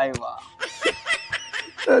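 A man's voice in short, breathy, broken bursts without words, high-pitched and irregular.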